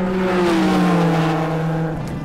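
Transition sound effect of the show's logo wipe: a loud engine-like note over a rushing hiss that starts abruptly, slowly falls in pitch and eases off near the end.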